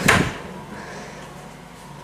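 A short knock as an interior door is pushed open, then quiet room tone with a faint steady hum.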